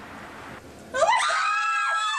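Teenage girls letting out a loud, high-pitched scream of excitement about a second in, rising in pitch and then held.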